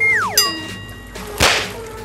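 Comedy sound effects added in the edit: a falling whistle that glides steeply down from high to low over about half a second, a short chime ringing on several steady tones, then a sudden loud swish about a second and a half in, over faint background music.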